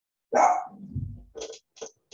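A dog barking: one loud bark about a third of a second in, then a few shorter, quieter barks near the end.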